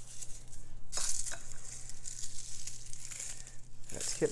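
Lemon verbena leaves and stems crackling as they are crushed and rubbed between the hands, with a sharper crackle about a second in.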